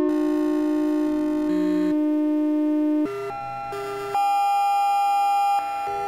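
Electronic music from a VCV Rack software modular synthesizer patch: a held low synth note for about three seconds, then a higher held note joins about a second later.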